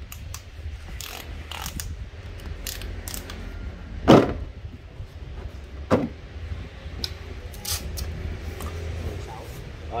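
A cordless drill and its hard plastic carrying case being handled and packed: scattered clicks and rattles, a loud knock about four seconds in as the case is shut, and a second sharp knock about two seconds later.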